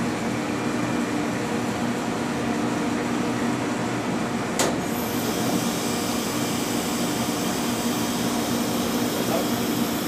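Steady hum of an X-ray photoelectron spectrometer's vacuum pumps, with one sharp click about halfway through, after which a faint high whine joins in: the load lock starting to pump down.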